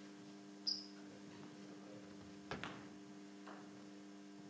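Two quick ticks of a table-tennis ball bouncing, about two and a half seconds in, after one short high squeak of a sports shoe on the wooden hall floor. A steady low electrical hum runs underneath.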